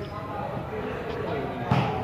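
Background chatter of spectators' voices, with one sharp slap of a volleyball being struck by hand near the end.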